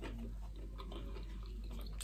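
Faint chewing of a mouthful of crisp-crusted pizza.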